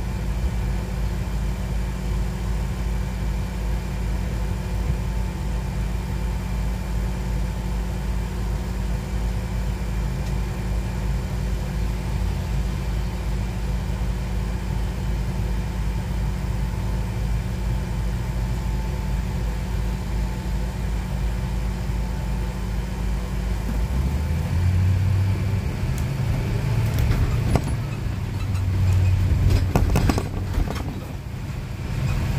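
Car engine idling steadily, heard from inside the car. Near the end the engine note changes and rises in two swells as the car pulls away and accelerates.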